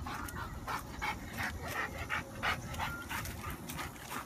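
A dog panting, a run of quick breaths at about two to three a second.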